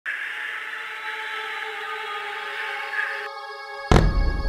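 Jet fighter engine noise in flight, a steady rushing hiss that cuts off suddenly after about three seconds. Near the end a sudden loud boom follows.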